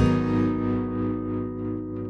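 Acoustic-electric guitar chord played through effects, struck once and left ringing, slowly fading after the rhythmic strumming stops.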